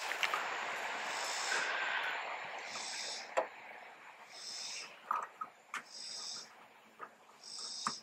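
Hand work on a car headlight: rustling, then several sharp plastic clicks as an LED bulb is worked into the back of the headlight housing. A short high-pitched rasping call repeats about every second and a half in the background.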